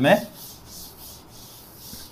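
Chalkboard duster wiping chalk off a chalkboard: a soft, steady rubbing hiss as the writing is erased.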